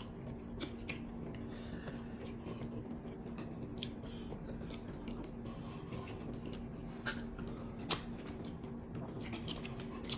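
Close-miked eating sounds of soft amala (black fufu) with egusi soup and fish eaten by hand: quiet chewing with scattered wet mouth clicks and smacks, one sharper click near the end.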